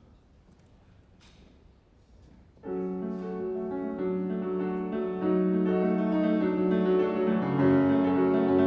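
A quiet hall with a few faint clicks, then a grand piano begins the song's introduction about two and a half seconds in. It plays sustained chords that grow louder twice.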